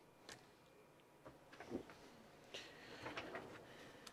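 Faint handling noises with several small, separate clicks as a small battery is fitted back onto a miniature RC model by hand.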